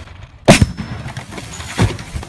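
A loud bang about half a second in, followed by a second, smaller thump near the end, as the jug of Dr Pepper and Mentos erupts.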